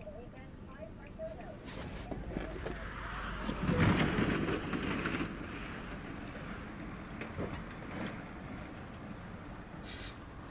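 Tractor-trailer skidding out of control on an icy highway: a rushing, vehicle noise that builds and peaks about four seconds in, then settles to a steady lower hum.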